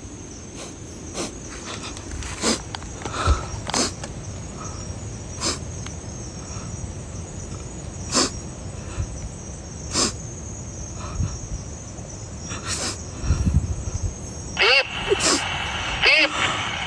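A steady high chorus of night insects, with scattered sharp clicks and crackles every second or two. Near the end a voice briefly comes in.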